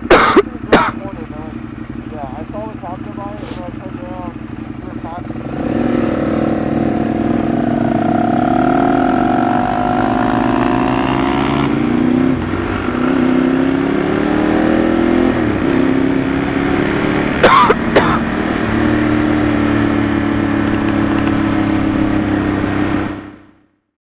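Ducati 848 EVO's L-twin engine idling at a standstill, then pulling away about five seconds in, the revs rising and dropping through several gear changes as the bike rides on. A few sharp knocks come near the start and again about two-thirds of the way through.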